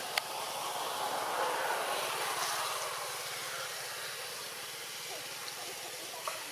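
A steady rushing noise, with no clear pitch, that builds over the first two seconds and then slowly fades, with one sharp click just after the start.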